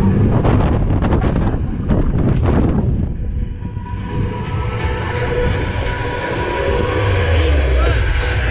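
Roller coaster car running along its steel track: steady rumble of the wheels with a run of clattering about half a second to three seconds in, and wind buffeting the microphone as the ride picks up speed near the end.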